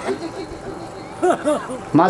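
A man's voice over a microphone and loudspeakers pauses, leaving low background noise. In the second half come a few short rising-and-falling voiced sounds before the speech goes on.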